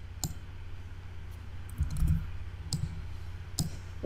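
Computer mouse clicking a few times, spaced irregularly, over a steady low hum.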